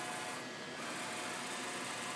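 Fryer MB-11 CNC bed mill's Z-axis servo drive and ball screw jogging, a low steady whir with a few faint steady tones.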